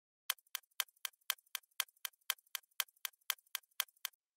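Stopwatch ticking sound effect: an even run of sharp, crisp ticks, four a second, starting a moment in.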